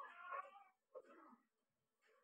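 A baby's two short, faint vocalisations: a cooing sound of under a second, then a shorter one about a second in.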